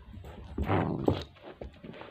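A puppy running in across carpet with a toy: soft paw thumps, then a short scuffle with a brief high note about a second in.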